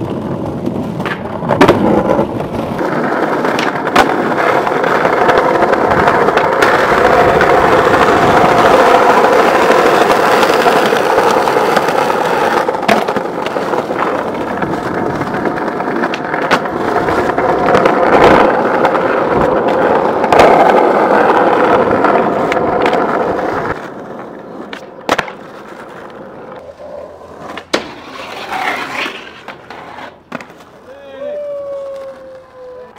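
Skateboard wheels rolling over concrete pavement in a loud, steady roar for most of the stretch, broken by sharp wooden clacks of pops and landings. About three-quarters of the way through the roar drops away, leaving a quieter stretch with a few isolated sharp knocks.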